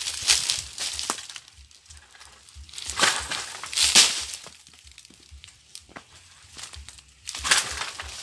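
Dry coconut palm fronds rustling and scraping as a long wooden pole is pushed among them toward a bunch of coconuts. The rustling comes in several bursts, loudest about four seconds in and again near the end.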